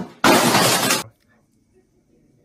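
A loud shattering crash sound effect from an inserted meme clip, starting suddenly about a quarter second in, lasting under a second and cutting off abruptly.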